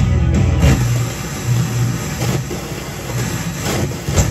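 FM broadcast music playing from a 1975 Fisher 432 stereo receiver as its tuning knob is turned across the dial. The sound breaks up into short bursts of static between stations, once about half a second in and again near the end.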